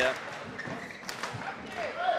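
A few sharp taps and knocks from play on a badminton court, spread over a couple of seconds. A commentator's brief "yeah" comes at the start.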